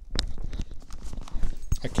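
Microphone handling noise as a lavalier mic and its cable are tucked into the lining of a Schuberth helmet: irregular knocks, clicks and rubbing close to the mic, with a sharp click just after the start.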